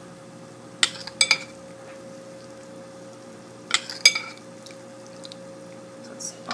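Metal spoon clinking against a ceramic slow-cooker crock while ladling pan juices over a pork shoulder: two pairs of clinks, about a second in and about four seconds in.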